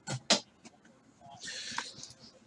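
Two short, sharp clicks close together, a few faint ticks, then a brief soft rustle near the end: small handling noises.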